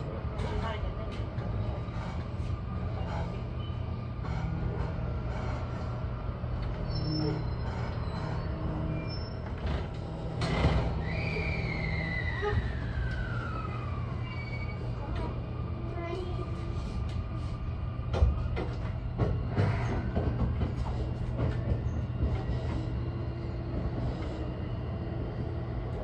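Interior running noise of a Sotetsu 20000 series electric train heard from the driver's cab: a steady low hum with scattered clicks and knocks from the wheels on the rails. About ten seconds in, a whine falls steadily in pitch over some three seconds.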